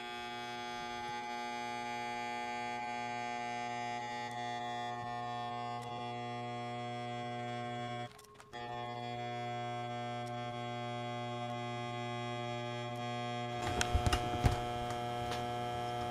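Steady electrical buzz from high-voltage test equipment, a mains-frequency hum with many overtones. It cuts out for about half a second midway, and handling clicks and knocks come in near the end.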